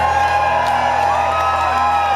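Loud live electronic dance music through a club PA, with a held bass note under it, and the crowd whooping and cheering over the top.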